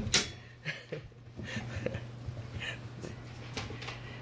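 Dogs moving about on a quilted mat and floor: faint scattered clicks and rustles, with one sharper click right at the start, over a steady low hum.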